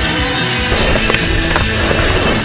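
Skateboard wheels rolling on concrete with a few sharp board clacks, under loud rock music with electric guitar.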